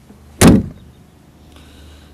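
The rear tailgate of a Land Rover Defender 90, carrying the spare wheel, slammed shut: one loud metal bang about half a second in, with a short ring after.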